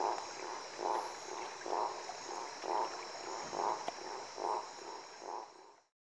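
Gladiator tree frog (Boana boans) calling: a series of short notes about once a second over a steady high-pitched drone, fading out near the end.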